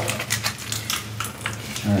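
Tightly sealed plastic package of ARP pressure plate bolts being handled and pulled at, with light crinkling and small clicks and rattles of the bolts inside, over a low steady hum.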